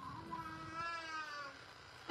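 A faint, high-pitched voice-like call held for about a second, rising slightly and then falling.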